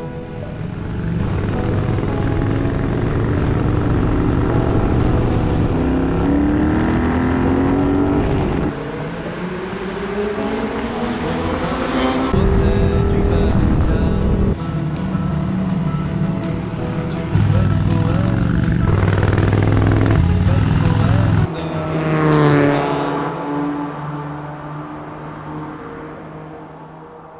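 Motorcycle engine revving hard under acceleration; its pitch climbs several times and drops abruptly between climbs, as with gear changes, over electronic music with a steady beat.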